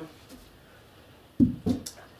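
Cricket bats knocking against each other and the rack as one is put back and another lifted out: one sharp knock about one and a half seconds in, then a couple of fainter clicks.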